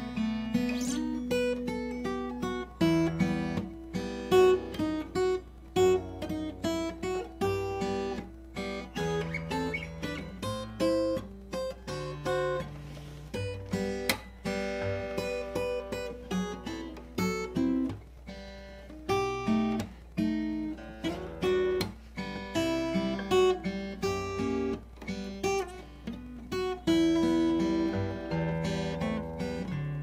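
Steel-string acoustic guitar played fingerstyle: a continuous passage of picked melody notes over thumbed bass notes, left to ring into one another.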